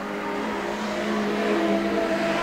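Several production sedan race cars' engines running on a dirt speedway, a few steady engine notes at different pitches overlapping. The sound grows gradually louder.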